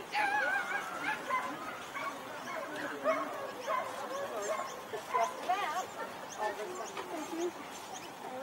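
A dog whining and yipping in a run of short, wavering high-pitched calls, over faint background talk.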